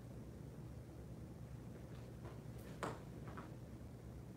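Faint steady room hum with a few brief sounds of movement from a kung fu saber form being performed on foam mats: the sharpest comes near three seconds in, with two softer ones around it.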